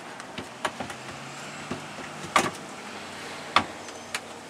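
Stainless steel sink clunking and knocking against its counter cutout as it is handled and set in place, a handful of separate knocks, the loudest about two and a half seconds in and another sharp one near the end.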